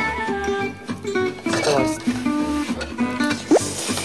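Background music with a stepping melody over a steady beat, and a short rising whoop near the end.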